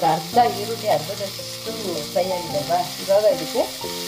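Sliced onions and vegetables sizzling in hot oil in a kadai, stirred and scraped with a steel ladle, over background music.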